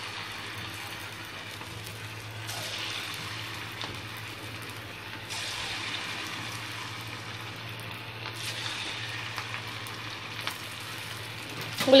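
Upma bondas deep-frying in hot oil in an iron kadai: a steady sizzle of bubbling oil, with a low steady hum underneath.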